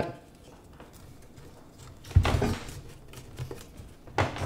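A plastic retainer clip being pressed onto a Onewheel GT's motor cable plug: one sharp knock about two seconds in, then a few light plastic clicks from handling.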